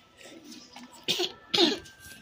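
Two short, breathy vocal sounds from a person, about half a second apart, about a second in.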